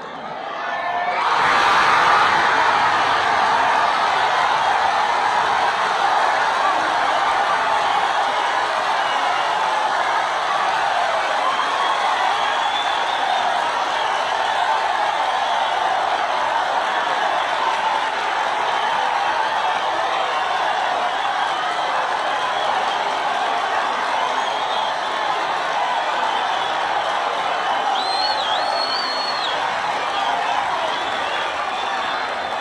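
Packed stadium crowd bursting into loud cheering and applause about a second in, as a home high jumper clears the bar. The ovation stays loud and sustained.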